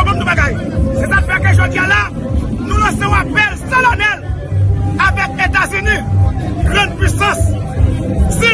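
A man speaking loudly and excitedly over the babble of a crowd, with music underneath.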